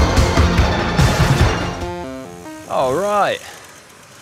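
Background music with a heavy steady beat that ends about two seconds in with a short run of falling notes. Near the end comes a brief wavering voice-like sound whose pitch swoops down and back up.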